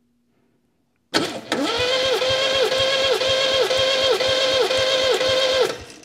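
An MGB's 1.8-litre B-series four-cylinder engine being cranked over by its starter motor with the ignition off, during a closed-throttle compression test. Cranking starts about a second in and stops just before the end. The whine dips in pitch about twice a second as the engine slows on each compression stroke of a cylinder that reads a healthy 145 psi.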